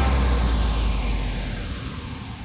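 A fading noise wash with a deep low rumble under it that stops near the end, and a falling sweep running through the noise: a sound-effect tail dying away after the song's last beat.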